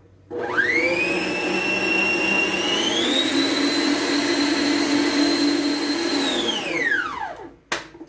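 Arno stand mixer's motor starting up and whisking a thick chocolate cream and condensed-milk mixture, its whine rising quickly, then stepping up to a higher speed about three seconds in. Near the end it is switched off and winds down to a stop.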